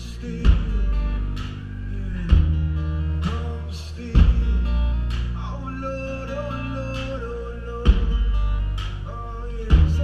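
Live band music over a PA: guitar and singing over sustained bass, with strong low drum hits every few seconds.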